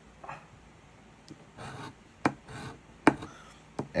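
A coin scratching the coating off a paper scratch-off lottery ticket in short rasping strokes, with a few sharp ticks of the coin against the card.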